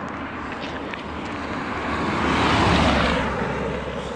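A car passing by on an asphalt road: the engine and tyre noise swell to a peak about two and a half to three seconds in, then fade away.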